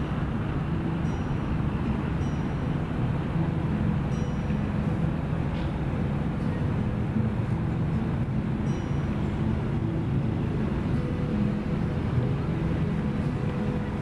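Steady rumble of city road traffic from the street below a pedestrian bridge, with a few faint ticks over it.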